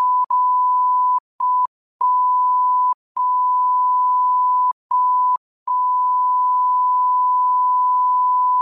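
Censor bleep: a single steady beep tone laid over speech, broken by several short gaps.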